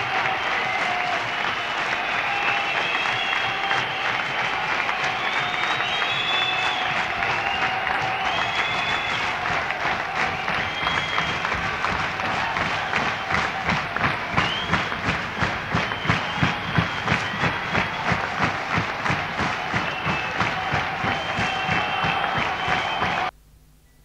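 Concert audience applauding and cheering, with shrill whistles rising and falling over the clapping. Past the middle, the applause settles into steady clapping in unison, about three claps a second.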